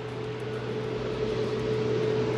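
A motor vehicle's engine running with a steady hum of constant pitch, slowly growing louder as it approaches.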